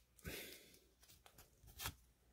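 Near silence, with a faint rustle about a quarter to half a second in and one short, sharp crackle near the end: a foil Pokémon booster pack being handled as its cards are pulled out.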